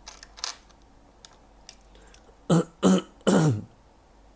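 A man clearing his throat: three short coughs in quick succession, the last dropping in pitch, after faint breathy sounds near the start.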